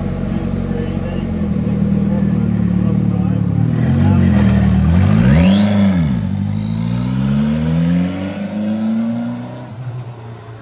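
Formula 4 single-seater race car engine idling, revved once about five seconds in, then pulling away with its pitch climbing steadily as it accelerates, fading near the end.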